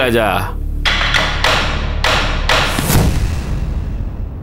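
Dramatic background-score stinger: a falling swoosh, then a run of about six heavy percussion hits that ring out and fade after about three seconds.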